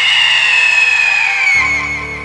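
A loud, drawn-out, high-pitched scream whose pitch slowly slides downward, over background music.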